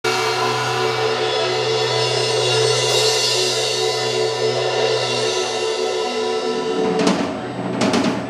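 Live rock band holding one sustained chord over cymbal wash, which fades out and is followed by two sharp drum hits near the end.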